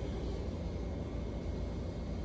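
DTF powder-shaker dryer running with a steady low mechanical hum, its conveyor belt just switched on in manual step mode.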